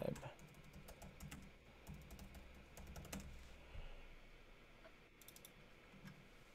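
Faint, irregular keystrokes on a computer keyboard as a command is typed.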